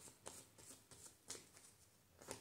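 Tarot cards being shuffled by hand: a few faint, soft strokes of the deck that fade away near the end.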